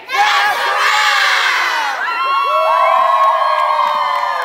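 A group of young girls cheering and screaming together. It starts abruptly and loud, with many high voices overlapping in long, gliding squeals.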